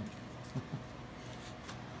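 Faint soft rubbing and patting of a gloved hand working a dry seasoning rub into a raw beef roast in an aluminium foil pan, with a few light taps.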